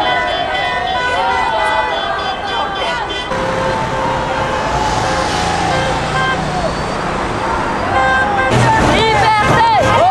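Road traffic with car horns held in long steady notes, under people's voices shouting. The voices are strongest at the start and again near the end; in the middle, traffic noise dominates.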